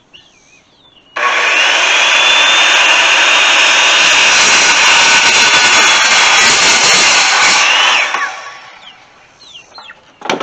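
Corded circular saw starting about a second in and cutting through a wooden board for about seven seconds, a steady whine under the cutting noise, then running down near the end.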